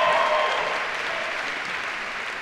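Audience applauding, swelling at the start and slowly dying down.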